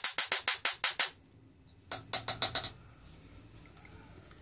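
Rapid train of sharp high-voltage electrical snaps, about ten a second, as the flyback-charged capacitor keeps arcing into a TV speaker. The snaps stop about a second in, and a second, shorter burst follows around two seconds in.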